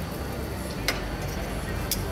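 Steady outdoor background noise with a low hum underneath, and two brief faint clicks about a second apart.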